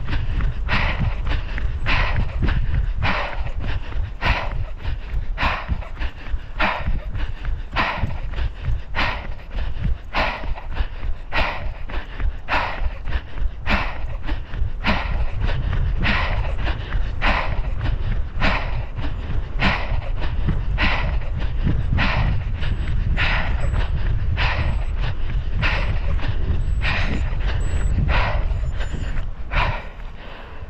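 A runner's rhythmic footfalls and hard breathing at a sprint, about one and a half beats a second, over a steady rumble of wind on the microphone. The rhythm stops right at the end.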